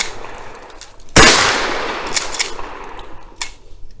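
A single shotgun shot about a second in, its echo dying away over about two seconds, followed by a few light clicks.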